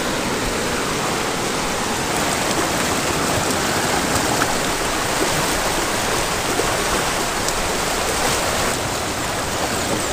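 River rapids rushing, a loud steady roar of white water close by.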